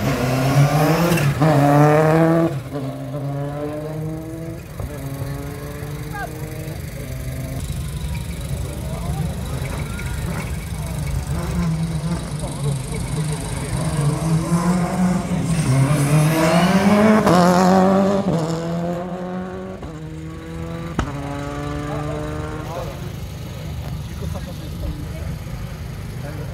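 Subaru Impreza WRC rally car's turbocharged flat-four revving hard as it pulls away from a standing start, then easing off. A little past halfway it revs up again in a long climb and drops away.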